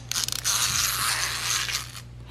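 Small plastic wind-up walking toy released onto a hardwood floor: its clockwork motor buzzes and its feet clatter for nearly two seconds, starting with a few sharp clicks and stopping abruptly near the end.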